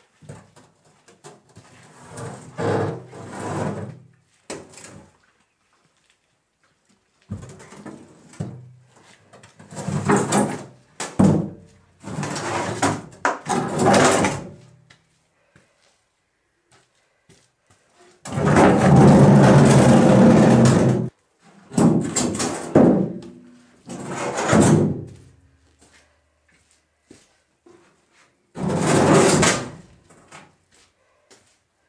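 An old bathtub being dragged and shoved over the ground in a series of scraping, sliding pulls, each one to three seconds long with pauses between. The longest and loudest pull comes about two-thirds of the way through.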